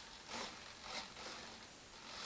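Faint, short rasping buzzes, twice, from the model's thrust-vectoring nozzle servos moving as the aileron stick is worked.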